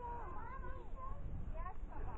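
Faint, high-pitched children's voices calling and chattering in a sing-song way some distance off, with no clear words, over a low rumble of wind on the microphone.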